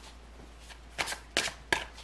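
Tarot cards being handled off-picture: three short, crisp card snaps about a third of a second apart in the second half.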